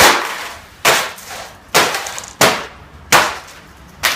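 A laptop being smashed against a wooden floor: five sharp cracking blows under a second apart, each dying away quickly.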